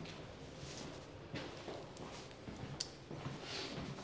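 Faint footsteps and shuffling movement on a hard floor in a small room, with a few soft knocks and one sharp click near the end.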